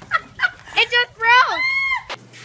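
A woman shrieking from the shock of ice-cold water poured over her. A quick string of short, high, gasping cries about three a second builds into one long high scream near the end.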